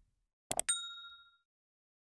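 Animated subscribe-button sound effect: quick clicks about half a second in, then a single bright bell ding that rings briefly and fades.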